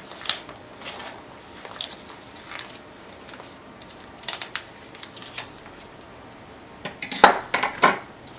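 Paper cards being handled and slid into the plastic pockets of a scrapbook page protector: scattered rustles and light taps, with a louder cluster of crinkling and tapping near the end.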